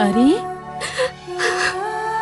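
A woman sobbing and whimpering, with gliding cries and about three short gasping breaths, over held notes of background music.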